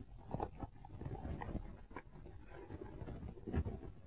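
Hands handling the fabric lining and pads inside a motorcycle helmet shell: soft rustling with small clicks and taps, and a louder knock about three and a half seconds in.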